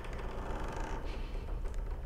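Horror film soundtrack playing a steady low rumble under a hissing wash of noise, with no dialogue.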